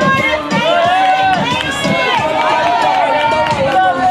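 Several voices shouting at once, spectators cheering on runners during a track race.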